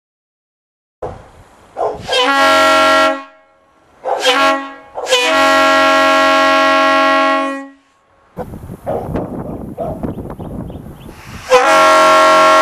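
Leslie RS-3L three-chime locomotive air horn blown by hand off a portable air compressor: each blast sounds a chord of several tones, with a rough, uneven start before it settles. Two short blasts, then a long blast of about two and a half seconds; after a few seconds of rough noise, another blast begins near the end.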